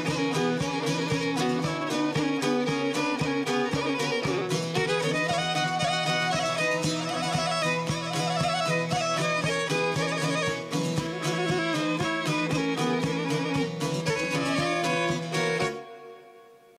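Instrumental folk music: a violin leading over strummed plucked strings with a steady beat, stopping abruptly just before the end.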